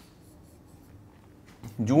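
Faint scratching of a pen writing figures on a board, then a man's voice starts near the end.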